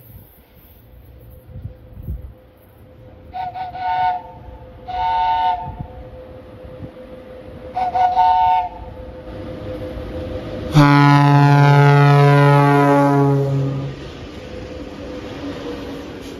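VL80S AC freight electric locomotive sounding its horns in greeting: three short, higher two-note toots (the first one stuttering), then about eleven seconds in a long, much louder deep horn blast lasting about three seconds. Under them, the running rumble of the approaching locomotive grows until it passes close at the end.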